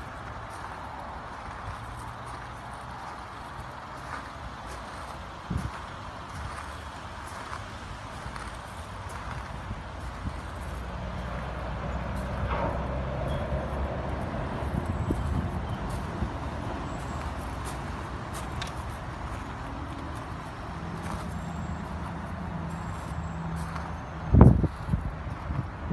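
Outdoor wind on the microphone, a low uneven rumble that swells in the middle, with light crunching of footsteps on gravel.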